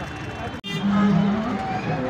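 Traffic and crowd noise beside a busy road; the sound cuts off abruptly about half a second in, then a voice holds long, drawn-out notes over the crowd.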